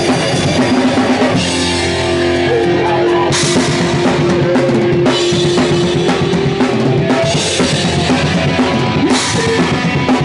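Hardcore punk band playing live: distorted guitar and bass over a drum kit with crashing cymbals, loud and close to the drums. A held note rings through the middle, with cymbal crashes about a third of the way in, halfway and near the end.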